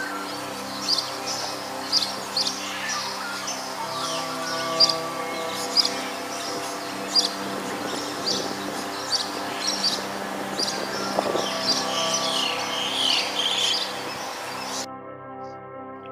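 Wild birds chirping, sharp high calls repeating about once a second with some quick falling notes, over steady background music. The birdsong stops shortly before the end, leaving the music.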